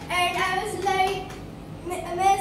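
A young girl singing a short phrase in held, gliding notes.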